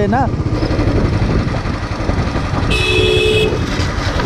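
Royal Enfield Bullet 500's single-cylinder engine running steadily as the motorcycle is ridden. A horn honks once, for under a second, about three quarters of the way in.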